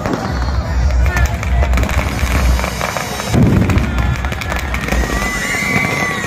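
Firecrackers inside a burning Ravana effigy going off: a string of loud bangs and crackling, with heavy bangs at the start, about a second in and again past the middle.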